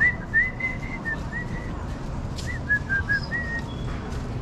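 A person whistling a tune: a run of short clear notes rising and falling in pitch, with a pause in the middle and then a few more notes. A steady low background rumble runs underneath.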